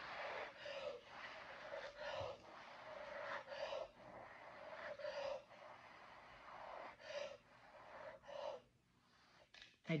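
A person blowing by mouth onto wet poured acrylic paint, a run of short, breathy puffs about one a second with quick breaths taken between, stopping shortly before the end. The breath pushes the paint puddle outward to open a bloom of cells.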